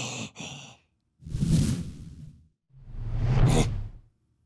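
A cartoon character's voice sighing twice, each long breath out lasting about a second.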